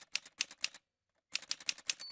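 Typewriter key strikes in two quick runs of about half a dozen clacks each, with a short pause between the runs.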